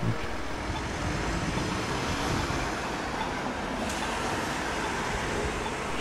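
Steady urban road-traffic noise, an even hiss of passing vehicles with no distinct events.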